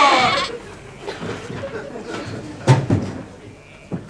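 A sheep bleating, a wavering cry that fades out about half a second in. A single thump follows near three seconds in.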